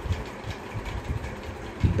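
Low, uneven rumbling background noise with irregular low thumps.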